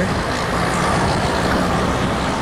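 Road traffic noise led by a tractor-trailer's diesel engine running steadily close by, heard from inside a car.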